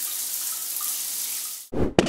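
A steady rushing hiss, like running water, in a break in the soundtrack music, cut off about three-quarters of the way in by a short sudden burst.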